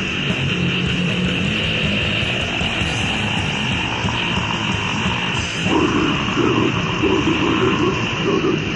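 Lo-fi extreme metal from a cassette demo: a dense, noisy wall of distorted guitar and drums. About five and a half seconds in, it changes to a choppier pattern.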